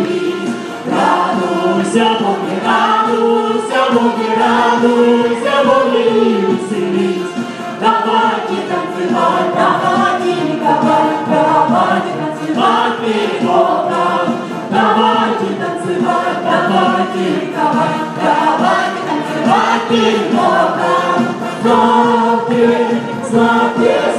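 A group of voices singing a worship song together in chorus, steady and continuous.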